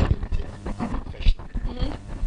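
A man's voice, close to the microphone.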